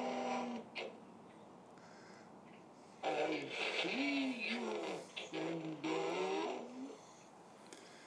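A voice put through an Optimus Prime voice-changer helmet, sounding robotic: two short phrases, the first about three seconds in and the second about five and a half seconds in, with quiet between and after.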